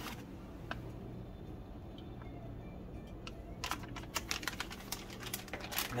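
A few scattered light clicks, then a quick run of light clicking and tapping in the second half, over a low steady hum.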